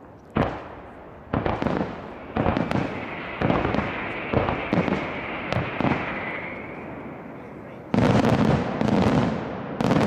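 Fireworks going off: sharp single bangs about once a second, then from about eight seconds in a dense, rapid barrage of loud bangs.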